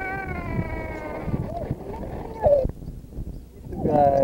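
A young child's high voice making long, drawn-out wordless calls: a held, slowly falling tone at the start, then a shorter, louder falling cry about halfway through.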